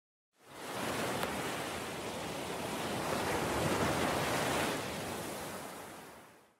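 A rushing swell of white noise, the sweep that opens an electronic dance track. It comes in about half a second in, builds gradually and fades out near the end.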